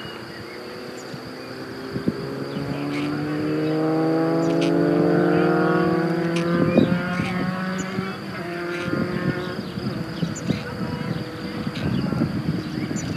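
A motor vehicle engine passing, its note climbing slowly in pitch as it grows louder for a few seconds and then fading. A sharp crackle comes about seven seconds in, with crackly rustling after it.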